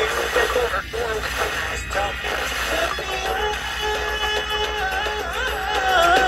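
Music from an FM broadcast playing through the small built-in speaker of a 5 Core portable AM/FM/shortwave radio. It sounds a little distorted, which the owner thinks may be the speaker.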